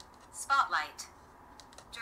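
A single short spoken word about half a second in, then a few faint clicks as the small mode button on the DJI Flip drone is pressed.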